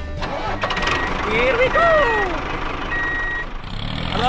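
A vehicle engine running, with an electronic reversing beeper sounding three times, mixed with short high-pitched voice exclamations.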